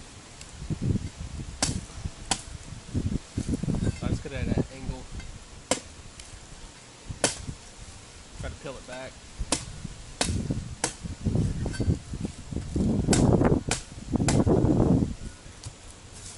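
Machete chopping into the husk of a golden coconut: a dozen or so irregular sharp blade strikes and dull thuds, with the loudest, longer hacks near the end.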